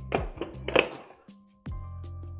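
A few hard knocks and taps from the plastic blender base being handled on a wooden workbench in the first second. Background music with a steady bass comes in near the end.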